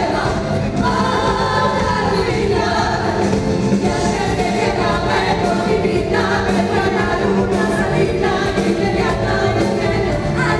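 Two women singing a ballad live into microphones with band accompaniment.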